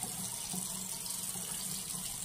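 Bathroom sink tap running steadily into the basin while water is cupped up to wet the face before washing.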